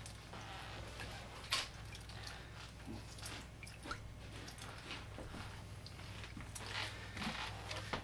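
Faint handling noise of a wet fish being picked up and set on a wooden cutting board: scattered light clicks and soft squishing, the sharpest click about a second and a half in, over a steady low hum.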